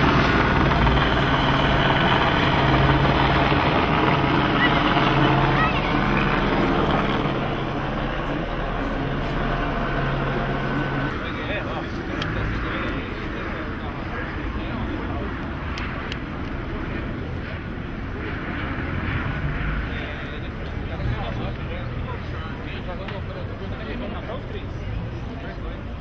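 A steady engine drone under indistinct voices that stops about eleven seconds in, leaving a murmur of distant voices and street noise.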